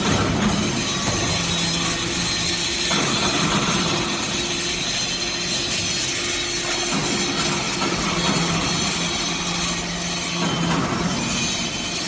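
Hydraulic briquetting press for cast-iron chips running: a steady loud machinery hiss over a low hum from the hydraulic power unit that shifts in pitch a few times.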